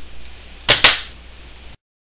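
Two quick sharp clicks about a sixth of a second apart over a low steady hum, then the sound cuts off abruptly to silence near the end.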